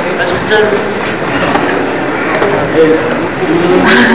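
Many voices talking over one another: crowd chatter with players and a coach speaking close by, no single voice clear. A short sharp knock sounds just before the end.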